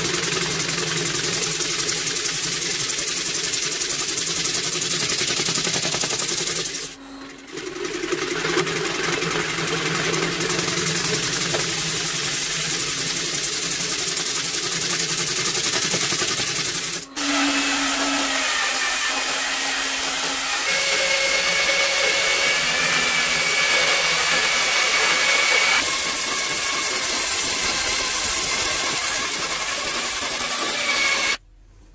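Wood lathe running, spinning a hollowed wooden vessel, a steady hum with a hiss over it. The sound dips briefly about a quarter of the way in and cuts off for an instant near the middle. After that the hum's pitch is different and a steady high whine comes in.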